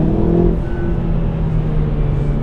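Hyundai i30 engine pulling hard, heard from inside the cabin, a steady engine note. The exhaust crackle it was being pushed for does not come.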